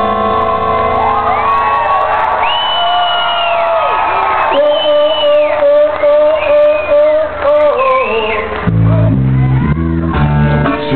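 Live acoustic band: sustained guitar chords under long wordless vocal wails that glide up and down. Near the end the guitars break into a rhythmic strummed figure.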